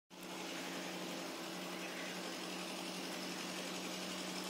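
A steady machine hum: a constant low drone over an even background hiss, starting as the recording begins.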